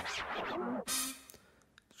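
Record-scratch effect in the song's break: a few quick back-and-forth pitch sweeps that fade away, leaving a short gap of near silence just before the end.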